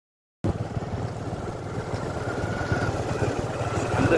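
A motor vehicle's engine running steadily as it travels, cutting in suddenly about half a second in.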